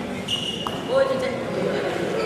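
Indistinct voices echoing in a large gymnasium, with a brief steady high tone starting about a third of a second in and a thump about a second in.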